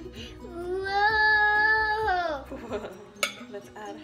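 A young child's long, high-pitched vocal cry, held steady for about a second and a half and then sliding down in pitch, over light plucked background music. A single sharp click comes near the end.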